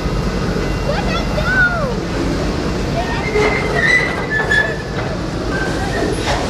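Loaded flatcars of a military freight train rolling past: a steady low rumble of steel wheels on rail, with brief high wheel squeals about three to four and a half seconds in.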